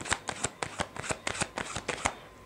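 A deck of cards being shuffled by hand: quick, irregular slaps and flicks of cards against each other, several a second.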